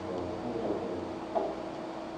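Quiet room tone: a steady low hum with a couple of faint, brief murmurs.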